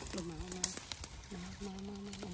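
A woman's voice humming two long, level notes at the same pitch, each starting with a short dip, over scattered faint crackling clicks.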